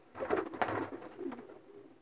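Domestic racing pigeon cooing, a few short low coos in the first second and a half.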